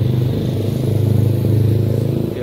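A motor vehicle engine running close by: a steady, loud low drone that swells slightly in the middle.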